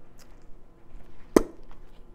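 A deck of tarot cards being handled, with one sharp tap about one and a half seconds in and a few faint card ticks around it.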